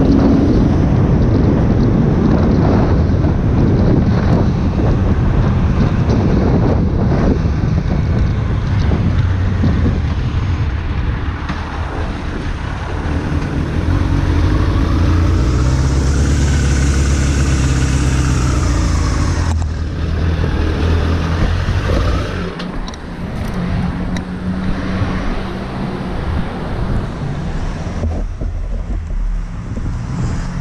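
A carbureted inline-four Suzuki Bandit 600 motorcycle engine runs while riding, with wind rush on the microphone for the first ten seconds or so. It then settles into a steady idle with an even engine hum, before the sound changes abruptly to quieter street traffic about two-thirds of the way through.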